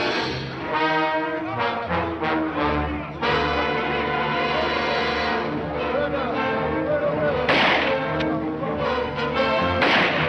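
Orchestral film score with brass holding chords, and a short loud crash cutting through about seven and a half seconds in.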